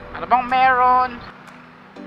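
A man's voice in one drawn-out exclamation lasting about a second, over the steady running of a Yamaha NMAX 155 scooter in traffic.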